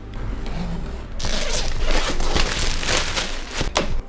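Packaging on a gimbal box being torn and opened by hand. A quieter rustle gives way about a second in to dense crinkling, tearing and scraping.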